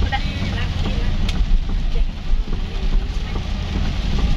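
Steady low rumble of a car being driven, with engine and road noise heard from inside the cabin.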